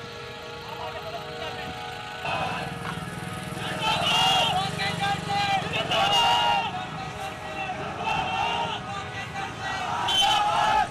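Background music for the first two seconds, cut off abruptly. Then a crowd of voices chanting in a loud, repeating pattern, a line about every two seconds, over a low rumble of vehicle engines.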